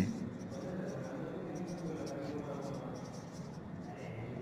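Marker pen writing on a board: a run of faint, short scratchy strokes as words are written out by hand.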